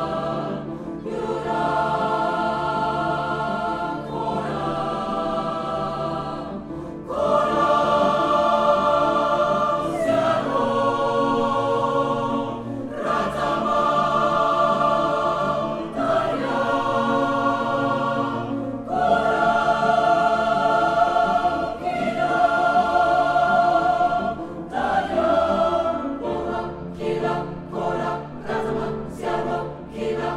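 Mixed choir singing in sustained chords with piano accompaniment, phrase after phrase; near the end the notes turn short and detached.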